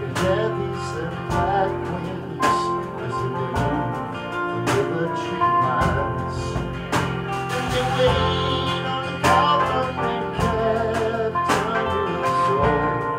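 Live acoustic band playing a country-style song: two acoustic guitars strumming with an upright bass underneath and a man singing, with strong accents about once a second.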